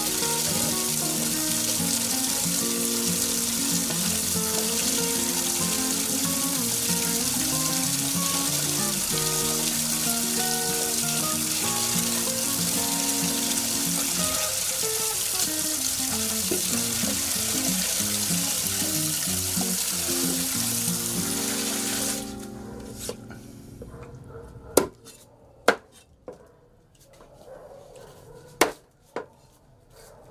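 Tap water running steadily into a plastic basin as hands wash meat in it, under background music. About 22 s in the water stops suddenly, and a knife strikes a cutting board in a few sharp, separate chops while lemongrass is cut.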